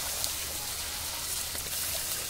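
Chicken masala in a hot iron kadhai hissing and sizzling steadily as water that has just been poured in hits the hot oil and turns to steam.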